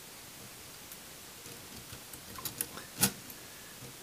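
A few light metallic clicks from a Meccano gearbox as its sliding gears on the key rod are shifted to a new ratio, the loudest about three seconds in, over a quiet background.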